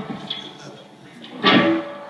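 Electric guitar notes ringing out and fading away into quiet room noise, then a short burst of sound from the stage about one and a half seconds in, with a brief held note after it.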